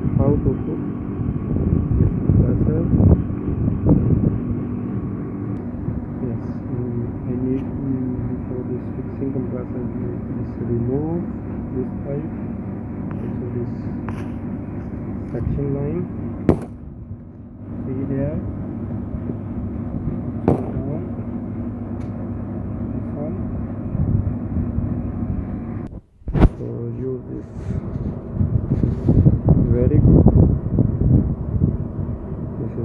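A steady mechanical hum made of several constant tones, with voices talking over it. The sound drops out briefly twice, near the middle and again near the end.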